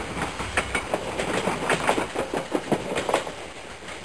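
Train running on rails: a steady rumble with irregular sharp clicks of the wheels over rail joints, fading out near the end.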